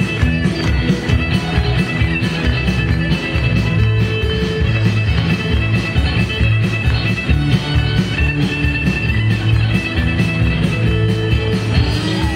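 Live country band playing an instrumental passage, a fiddle bowing the lead over electric guitar, keyboard and drums with a steady beat.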